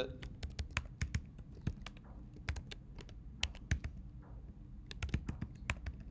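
Typing on a computer keyboard: rapid, irregular keystrokes clicking throughout.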